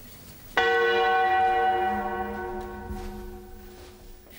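A church bell struck once about half a second in, its note ringing on and slowly dying away over about three seconds.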